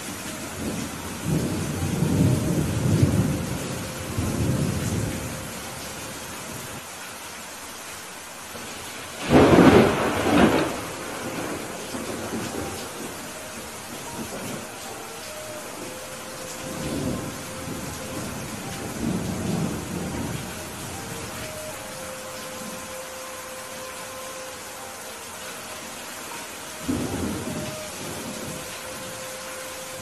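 Heavy rain falling steadily, with thunder. Low rolls of thunder come in the first few seconds, a sharp thunderclap about nine seconds in is the loudest moment, and further rumbles follow later.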